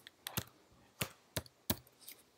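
Typing on a computer keyboard: about five separate keystrokes at an uneven pace, as a command is entered in a terminal.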